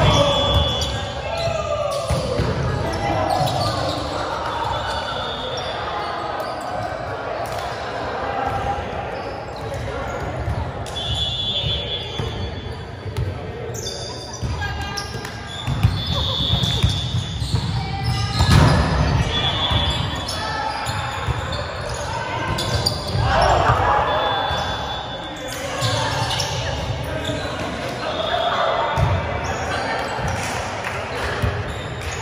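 Indoor volleyball rally on a hardwood gym court: the ball being struck, sneakers squeaking on the floor several times, and players calling out. It all echoes in a large hall.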